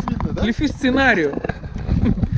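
A man's voice, a short utterance about half a second in, over a steady low rumble.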